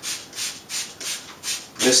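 Trigger spray bottle misting water onto fabric: a run of short hissing sprays, one about every third of a second.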